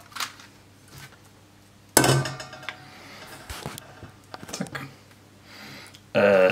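A stainless-steel cooking pot set down on a gas camping stove's metal pot supports, one sharp metallic clank about two seconds in that rings briefly, followed by a few quieter knocks and clinks.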